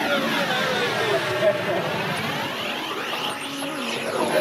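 Vehicles in a convoy driving past one after another, a pickup and then a minibus, with their engines and tyres heard together and people's voices over them.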